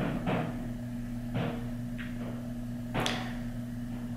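A few faint, sharp clicks and taps, the sound of a concealer tube and its wand applicator being handled, over a steady low hum.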